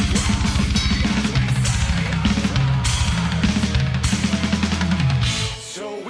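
Heavy metal drum kit playing: rapid double bass drum strokes under cymbals, with the band's music behind. The drumming stops about five seconds in, leaving a short lull.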